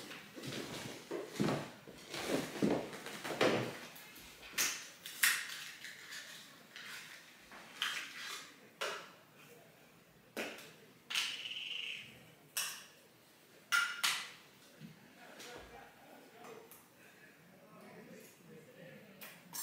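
A film camera being handled at a table: scattered small clicks and knocks with rustling, denser in the first few seconds, and one scrape about a second long near the middle.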